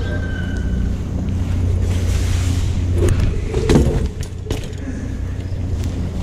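Wind rushing over the microphone of a camera riding along on a BMX bike rolling across a concrete court, a steady low rumble, with a few sharp knocks in the middle.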